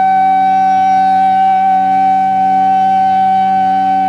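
Bansuri (Indian bamboo flute) holding one long, steady note over a low drone, on an old tape recording.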